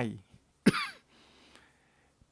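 A man coughs once, short and sharp, clearing his throat between spoken phrases.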